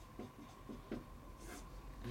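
Handwriting on a large sheet of paper: a few short, faint strokes of the pen, irregularly spaced.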